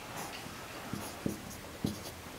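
Marker writing on a whiteboard, quiet strokes with three soft taps of the marker tip, the last the loudest.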